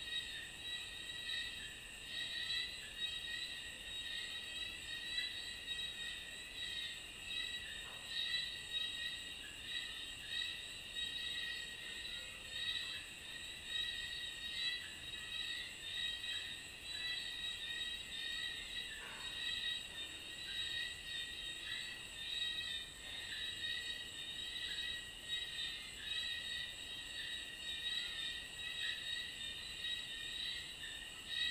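Night insect chorus, crickets chirring continuously at several high pitches layered together.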